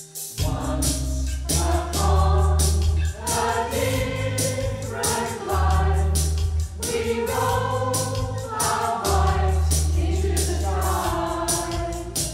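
Mixed-voice community choir singing in harmony over a bass accompaniment that comes in about half a second in, with a steady percussive beat running through.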